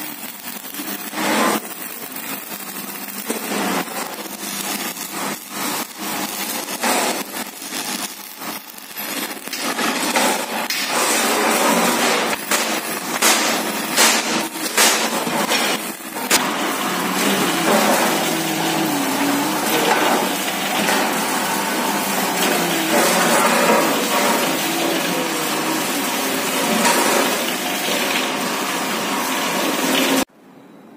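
Electric arc welding on steel sheet, crackling in irregular spurts. About ten seconds in it gives way to a drilling machine boring through the steel plate, a steadier harsh cutting noise with a faint low hum.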